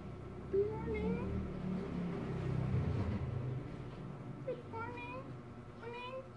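A domestic cat meowing in short, rising calls: a couple about half a second to a second in, and more from about four and a half seconds to the end.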